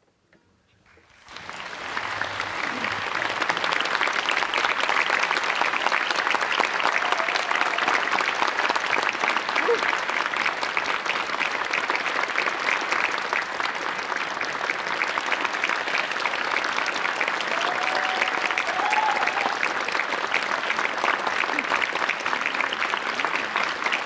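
Audience applauding. The clapping starts out of silence about a second in, swells within a second to full strength and then holds steady.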